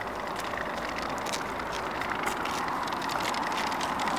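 Steady outdoor background noise, an even hiss with faint light ticks and no single standout event.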